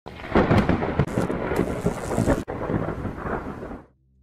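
Thunderstorm: loud cracks and rumbling over rain, broken off abruptly about halfway through, then a further rumble that fades away near the end.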